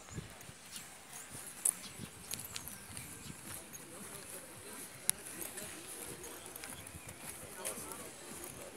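Footsteps on paved ground with a couple of sharp clicks, and faint voices of people talking in the background.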